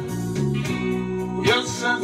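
Acoustic guitar strummed in steady chords, with a man singing along.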